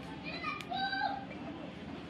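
Background voices, with a high, child-like voice calling briefly about half a second in, over a steady low hum.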